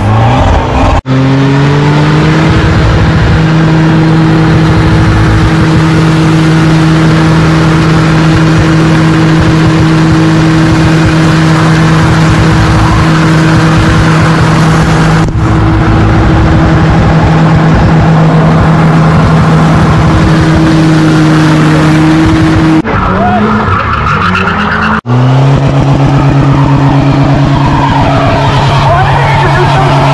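Car engine held at high, steady revs during a burnout, over the hiss and squeal of a spinning tyre. About 23 seconds in, the revs drop and climb again before holding steady once more.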